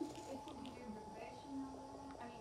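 Faint, distant speech in a small room, picked up well off the microphone, over a steady thin hum.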